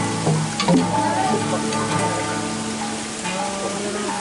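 Acoustic guitar chords ringing on and slowly thinning out, with a few sharp taps over a steady hiss.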